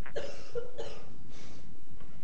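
A man coughing and clearing his throat in several short bursts.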